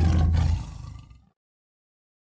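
Final moment of a reggae recording: a roar-like sound, tagged as a big cat's roar, over the last held bass note. The bass cuts off about half a second in and the roar dies away within the next second.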